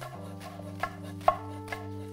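Kitchen knife chopping nettle leaves on a wooden cutting board: several short knife strokes against the board, about half a second apart.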